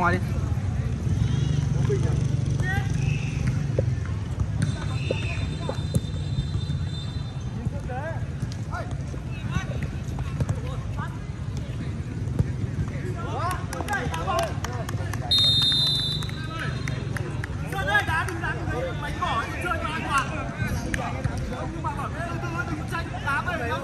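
Footballers shouting and calling to each other during play, in scattered short bursts, over a steady low rumble. A few sharp knocks come through, and a brief high-pitched tone sounds about fifteen seconds in.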